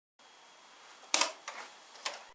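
Faint hiss, then a sharp click a little past a second in, followed by a couple of fainter clicks.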